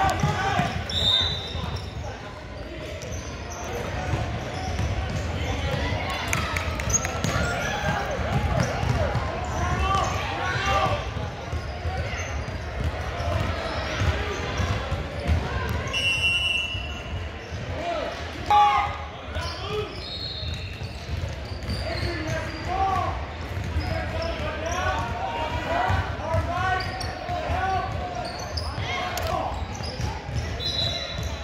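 Basketball game in a large, echoing gym: a basketball bouncing on a hardwood floor amid overlapping background voices from players and spectators, with a few short high squeaks and one louder sharp knock about two-thirds of the way through.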